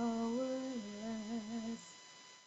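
A solo voice singing through a microphone and PA: one long held note, then a slightly lower note that wavers with vibrato, breaking off a little before two seconds in.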